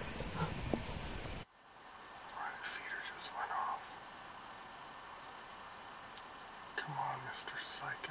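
Men whispering over a steady hiss. About a second and a half in, the hiss cuts off abruptly and a few quieter whispered phrases follow.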